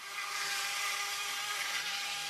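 Cork-harvesting power saw running steadily as it cuts into the cork bark of a cork oak, a steady motor whine over the hiss of the cut.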